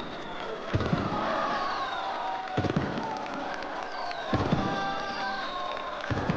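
Handheld firework tube firing, a sharp thump about every two seconds, three shots in all, over a sung ballad with backing music.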